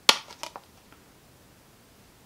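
A sharp plastic click, then two fainter clicks, as a Blu-ray disc is pried off the hub of its plastic case.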